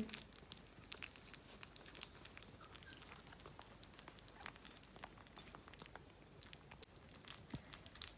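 Yorkshire terrier puppies eating soft meat pâté from a plate: faint, quick, irregular lapping and smacking clicks.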